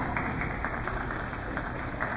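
Scattered applause in an ice rink, many separate hand claps, as a figure skating program ends.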